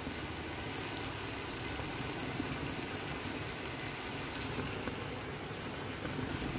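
Red chili masala frying in oil in a clay pot: a steady, even sizzle with no stirring strokes.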